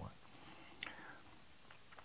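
Quiet pause in a man's speech: low room hiss with faint breathing sounds in the first second.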